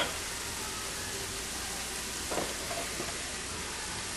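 Chopped onions and garlic sizzling steadily in melted butter in a pan on high heat.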